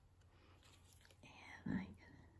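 Mostly quiet room tone with faint paper handling as a die-cut cardstock butterfly is pressed onto a card, then a soft breath and a quietly spoken word near the end.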